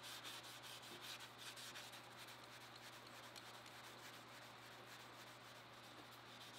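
Faint rubbing of a cloth wiped back and forth over a mirror-polished steel bar, cleaning off leftover polishing paste, over a steady low hum.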